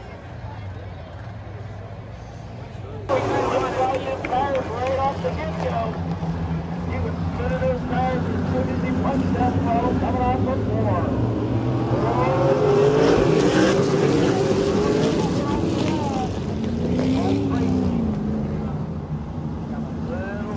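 A pack of race cars running laps on a dirt oval, their engines rising and falling in pitch as the field comes past, with crowd voices mixed in. About three seconds in the sound jumps suddenly louder, and it is loudest in the middle.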